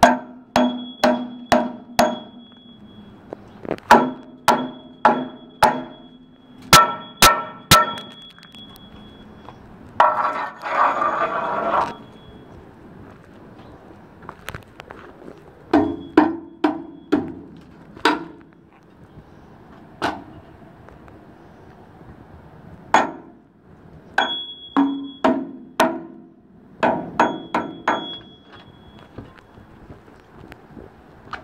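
A hammer strikes the concrete treads of an exterior steel stairway in quick runs of three to six blows, each run followed by a lingering metallic ring. About ten seconds in, a harsher rasping noise lasts for about two seconds.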